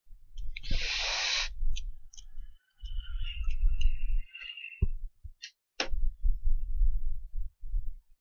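Handling noise on a repair bench: low bumps and knocks in stretches, with a short hiss about a second in, a few clicks, and a thin wavering squeak-like scrape from about three to five seconds.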